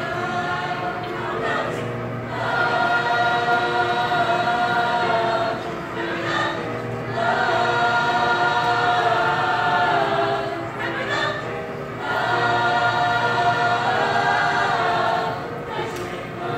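High school show choir singing in parts, holding long chords in phrases of about four to five seconds, with brief breaks for breath between phrases.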